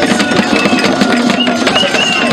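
Traditional Ghanaian drum ensemble playing a fast, dense rhythm on peg-tuned hand drums, struck with hands and sticks, with handclaps and voices singing over it.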